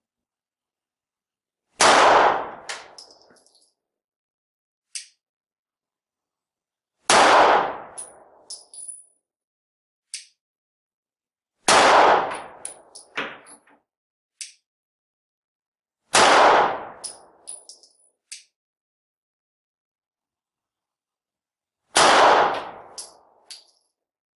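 Five live-fire pistol shots, spaced about four to six seconds apart, each dying away in a short echo and followed by a few light metallic clinks.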